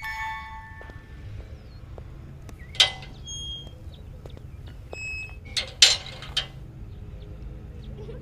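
Metal gate latch and bars clanking: one loud clank about three seconds in and a cluster of clanks near six seconds, over a low steady hum. Ringing chime notes fade out in the first second.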